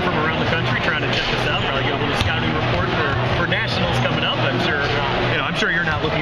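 People talking over a steady din of crowd chatter in a gymnasium.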